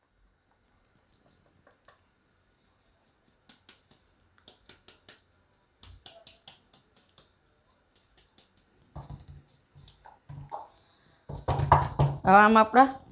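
Flour being sifted through a metal sieve over a stainless steel bowl: faint, irregular light taps and clicks as the sieve is shaken and knocked against the bowl, with a few duller knocks shortly before the end.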